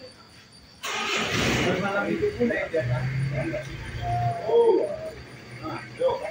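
Indistinct voices of several people talking in the background, with a short burst of noise about a second in and a low steady hum in the middle.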